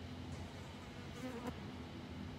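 Faint buzzing of a flying insect over a quiet, steady low hum, with a small faint sound about a second and a quarter in.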